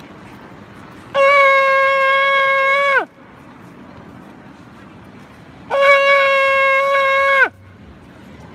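A shofar blown in two long, steady blasts of about two seconds each, the first about a second in and the second a few seconds later. Each holds one bright pitch and falls away sharply in pitch at its end.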